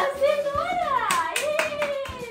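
Hands clapping, with several quick claps in the second half, over a held sung or hummed tone.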